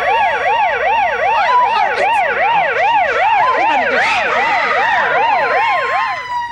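Emergency vehicle sirens. One siren sweeps rapidly up and down about three times a second, and a second siren's steady tone joins it in the second half.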